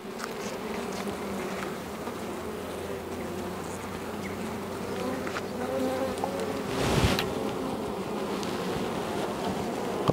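Honeybees humming steadily around a comb frame lifted from an open hive, with a brief louder rush of noise about seven seconds in.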